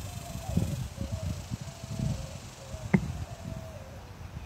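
Irregular low rumbling, like wind buffeting the microphone, under a faint slow tune that steps up and down in pitch, with one sharp knock about three seconds in.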